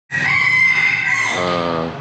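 A rooster crowing: one long, held high call that drops to a lower tone about two-thirds of the way through.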